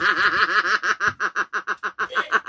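A woman laughing hard: a fast run of high, wavering laugh pulses for about a second, then breaking into shorter, separate gasps of laughter.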